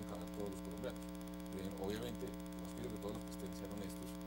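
Steady electrical mains hum, a low buzz of several steady tones, running under the programme audio.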